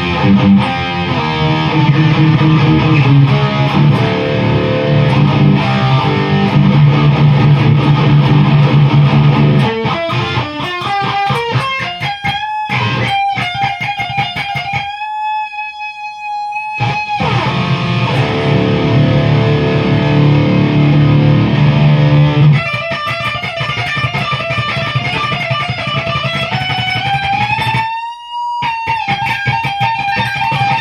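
Distorted electric guitar played through a Behringer TO800 Vintage Tube Overdrive pedal into a Peavey 6505 amp. It opens with low, chugging power-chord riffing, moves to high single lead notes including one long held note, goes back to riffing, and ends on lead notes with a slow upward bend.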